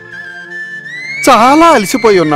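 Background music: a held flute note over a low drone, sliding up a step about a second in. A man's voice speaks briefly over it in the second half.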